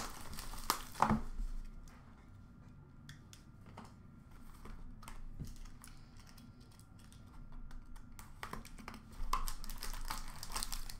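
Cardboard trading-card box and its plastic wrap being handled and opened by hand: light crinkling, scrapes and taps, with two sharper knocks about a second in and busier handling again near the end.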